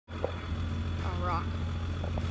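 A steady low rumble, with a boy's voice saying one short word about a second in.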